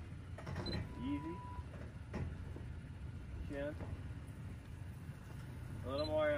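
Toyota Tacoma pickup's engine running at a low crawl over rocks, a low steady rumble, with brief faint voices.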